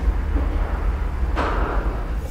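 Horror-trailer sound design: a deep, steady rumbling drone with a sudden rush of hiss about one and a half seconds in that fades away.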